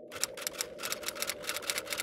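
Typewriter keys clacking rapidly, about eight strikes a second, as a title is typed out, over a steady low drone.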